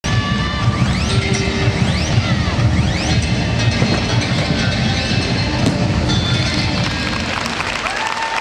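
Music with a heavy, pulsing bass playing through an arena, over the general hubbub of the hall.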